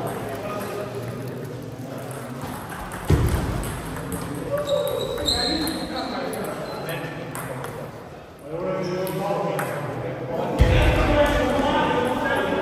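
Table tennis ball clicking off bats and the table during a rally, a few sharp taps, with people's voices in the hall.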